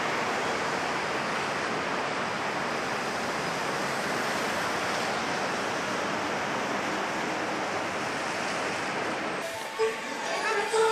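A steady, even rushing noise with no rhythm or pitch, which breaks off abruptly near the end.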